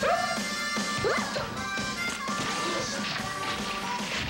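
Music from a 1990s TV promo played off an old VHS tape, with crashing and whacking sound effects over it.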